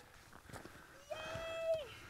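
A person's voice holds one steady high note for under a second, starting about a second in and dropping away at its end.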